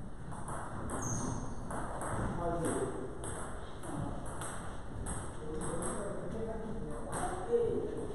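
Celluloid-style table tennis ball struck back and forth in a steady rally, clicking off rubber paddles and the table about twice a second, with a louder hit near the end.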